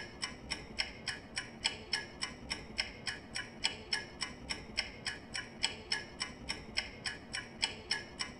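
Countdown timer's ticking-clock sound effect, even ticks at about three a second, marking the time left to answer a quiz question.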